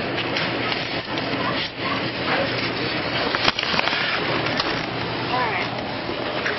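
Grocery store background: indistinct voices amid a steady din, with scattered clicks and knocks.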